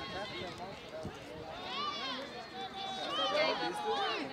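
Several distant voices of soccer players and spectators calling and shouting over one another, with no clear words.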